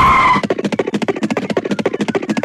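Cartoon soundtrack effects: a rapid run of short beats with a pitch that slides slowly downward, opened by a brief high ringing tone.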